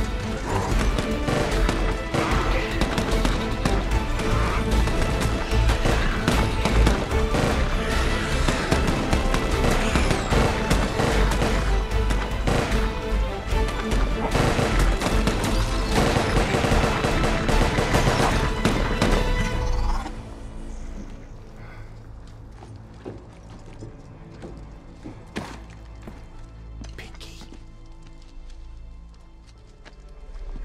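Film action soundtrack: music under rapid rifle gunfire, volleys of shots and impacts. About two-thirds of the way through it drops suddenly to quieter music with a few isolated hits.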